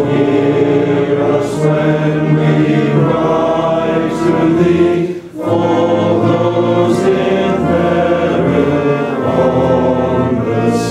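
A congregation of many voices singing a hymn together in a low-ceilinged wooden deck, with a brief break between lines about five seconds in.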